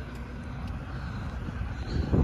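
Heavy truck engine idling: a steady low rumble.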